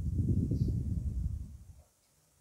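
Wind buffeting the microphone, an uneven low rumble that drops away abruptly near the end.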